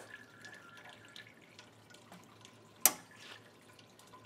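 A single sharp click about three seconds in: the reverse osmosis unit's pressure switch disengaging as the system depressurizes with the solenoid valve closed. Faint water dripping and trickling underneath.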